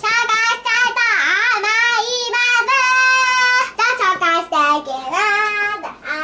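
A young girl singing loudly, with long held notes and pitch slides up and down.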